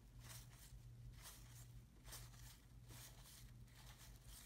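Near silence: faint, irregular soft flicks of cardboard trading cards being shuffled through by hand, over a low steady hum.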